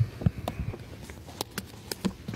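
A handful of sharp clicks and soft knocks, scattered irregularly over about two seconds, over faint room noise.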